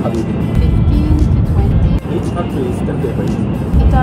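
Conversation over background music, with the low rumble of a shinkansen cabin beneath.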